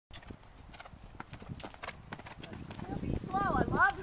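Hoofbeats of a horse cantering on a sand arena, a run of short, sharp strikes. Near the end a high-pitched voice rises and falls over them.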